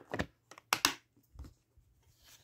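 Hard plastic pistol case being closed and moved: a handful of short plastic clicks and knocks, the loudest pair just under a second in.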